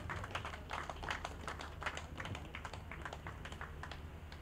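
Faint, scattered hand clapping from a small audience, many irregular claps through the whole moment, over a steady low hum.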